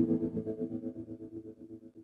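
Closing music ending: a held chord pulsing several times a second as it fades out.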